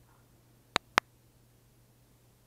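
Two sharp clicks in quick succession, about a fifth of a second apart, over a faint steady low hum.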